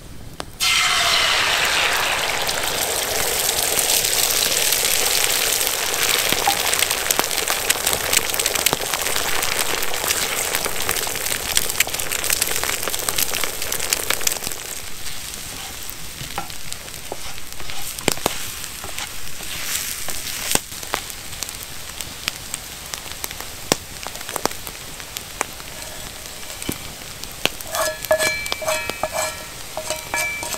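Beaten eggs hit a hot frying pan of bacon fat with a sudden loud sizzle about half a second in, and keep sizzling while they are stirred into scrambled egg with a wooden spatula. About halfway through, the sizzle drops lower and the spatula's scraping and tapping in the pan stand out.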